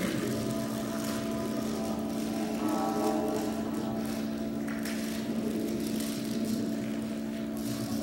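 A steady electronic drone of several held tones from the live-processed voice and electronic score, with some higher tones joining about three seconds in. A crackling noise over it fits eggshells being crushed underfoot.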